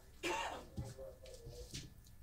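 A person coughs once, about a quarter second in, followed by faint voice sounds.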